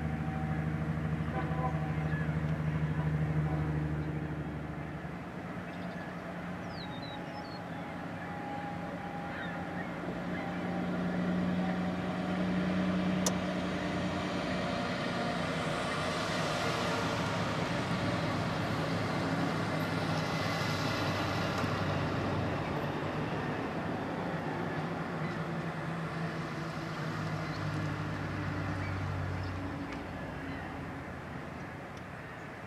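Diesel-electric locomotives running under low throttle, a steady engine drone that swells and shifts pitch slightly as they move, with one sharp click about thirteen seconds in.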